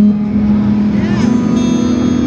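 Electric guitar played through an amplifier, a low note held and ringing steadily.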